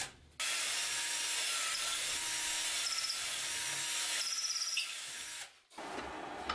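Power drill boring into the end of a wooden tool handle, a steady hiss of the bit cutting. The sound breaks off briefly just after the start and again shortly before the end.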